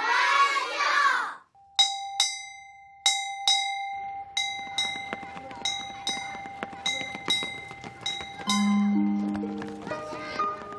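A roomful of children laughing together, then a school bell struck over and over, its single metallic note ringing on between strokes: a few slow strikes, then quicker ones, signalling the end of the school day. Soft music comes in near the end.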